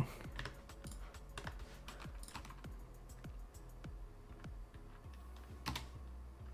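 Computer keyboard keys clicking: light, irregular keystrokes, with one louder click shortly before the end.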